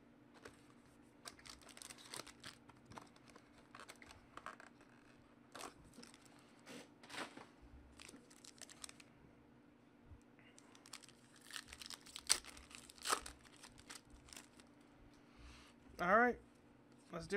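Foil wrapper of a trading-card pack crinkling and tearing as it is ripped open and the cards slid out: faint, scattered crackles, loudest in a cluster about eleven to thirteen seconds in, over a faint steady low hum.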